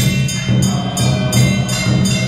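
Vietnamese Buddhist liturgical chant of praise (tán), sung in a low held voice over regular percussion strokes about twice a second.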